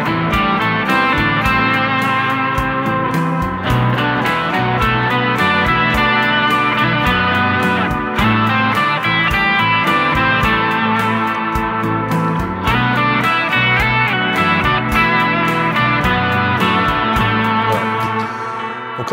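Stratocaster-style electric guitar playing a lead phrase in A minor pentatonic, then repeating the same motifs moved up to B minor pentatonic, over a looped backing of A minor and B minor chords with a steady beat.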